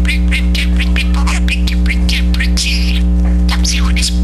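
Pet budgerigar chattering in a rapid run of clicks and squeaky chirps, which the owner hears as talking words ("very pretty", "come see all this blue"). Under it runs a loud, steady electrical mains hum.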